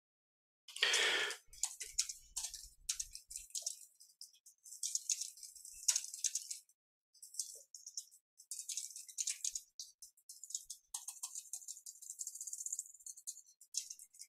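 Computer keyboard typing: quick runs of key clicks in short bursts with brief pauses, with one heavier knock about a second in.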